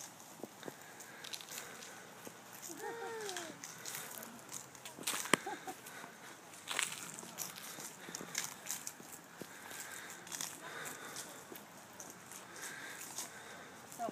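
A Radio Flyer wagon rolling over dry grass, leaves and twigs as it is pulled, with footsteps: scattered crackles and clicks, and one sharp knock about five seconds in. A brief high voice rises and falls about three seconds in.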